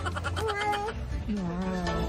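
Two short wordless vocal sounds, a high wavering one and then a lower drawn-out one, over light background music with plucked notes.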